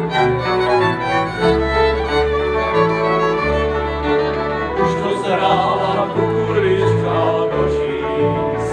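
Cimbalom band of violins, cimbalom and double bass playing a folk tune. About five seconds in, male voices start singing over the band.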